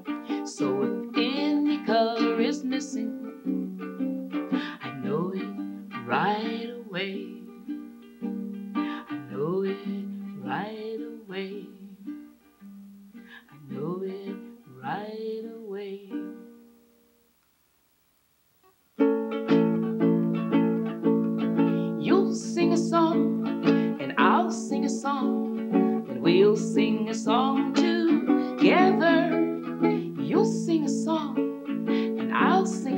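Ukulele strummed and picked in a lively instrumental passage. The playing dies away about 17 seconds in, there are about two seconds of silence, and then steady strummed chords start up again.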